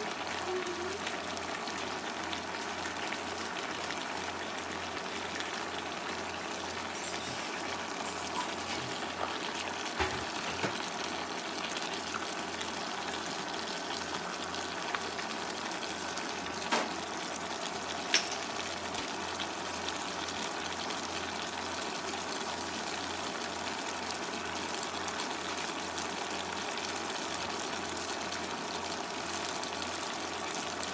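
Pot of beef pochero simmering on the stove, its broth bubbling with a steady water-like sound. A few short, sharp clicks come near the middle.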